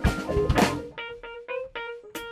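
A live funk band plays an instrumental passage on electric guitar, bass, drums and keyboard. The first half second is the full band with drum hits; about a second in the drums drop away, leaving short, clipped chords over a held note.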